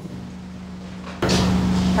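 Steady low hum under quiet room tone, which jumps suddenly louder with added hiss a little over a second in.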